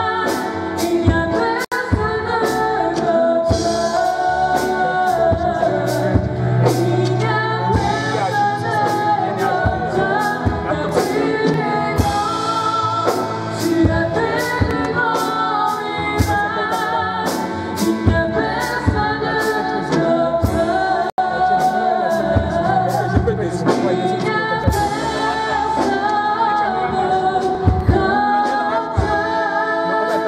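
Christian worship song sung by several voices, men and women, over instrumental accompaniment, with a steady beat of sharp strokes about two to three a second.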